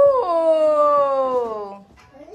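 A long drawn-out vocal "ooh" of admiration that rises at the start, then holds and slowly falls in pitch for nearly two seconds.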